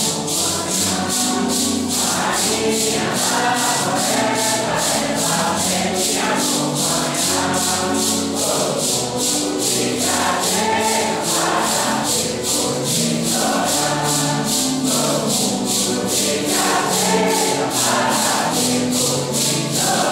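Santo Daime congregation singing a hymn together in unison, with maracas shaken in a steady, even beat under the voices.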